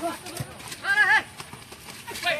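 A loud, high-pitched shouted call from a player on the pitch, about a second in, wavering in pitch for a fraction of a second.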